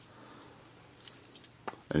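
Near quiet, with a few faint small handling clicks spread through it. A man's voice begins near the end.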